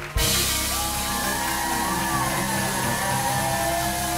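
Live band music cuts in abruptly just after the start and plays steadily, with whoops from a studio audience.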